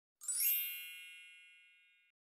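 A single bright chime, struck about a quarter second in and ringing on, fading away over about a second and a half.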